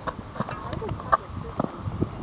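Quick, rhythmic footfalls of a javelin thrower's crossover steps on a rubberized track during the run-up and throw, several sharp steps a second.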